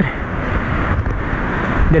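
Wind noise on the microphone: a steady low rumble with a hiss over it.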